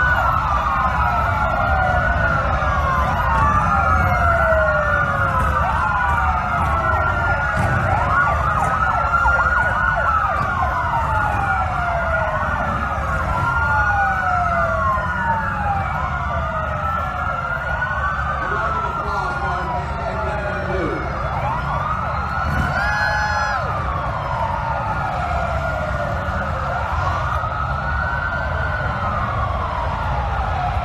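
Several sirens wailing at once, their rising-and-falling tones overlapping continuously over a steady low rumble.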